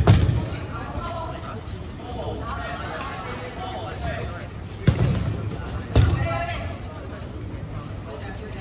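Dodgeballs hitting during play, three sharp thuds with a short echo: one at the very start, then two about a second apart near the end, amid players' shouts and chatter.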